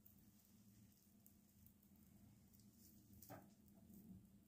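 Near silence: faint room tone with a low steady hum, and one faint brief rustle a little over three seconds in.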